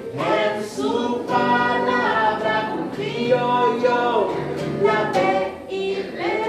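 A group of children singing a song together in chorus, with held notes and no clear instrumental beat.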